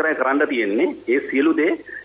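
Speech only: a person talking steadily in Sinhala.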